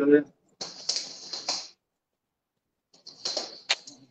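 Two short flurries of swishing and light tapping from a hand-to-hand drill against two punches, with a sharp slap near the end.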